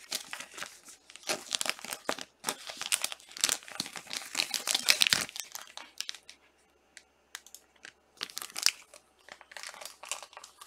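Clear plastic card sleeves crinkling as trading cards are handled and slipped into them: a fast run of rustles for about five seconds, then quieter, with a few short bursts near the end.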